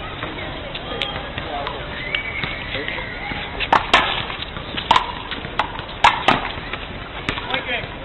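Sharp smacks of a small rubber ball being struck by hand and rebounding off a concrete wall and pavement in a one-wall handball rally. There are about seven smacks, starting a little before halfway and running to near the end, over faint background voices.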